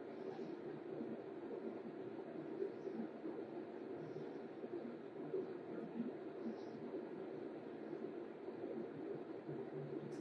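Quiet room with a low, steady background hum and faint, soft breathing every second or two.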